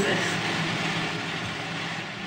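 Several electric cooling fans running in the room: a steady hum with a hiss, holding level throughout.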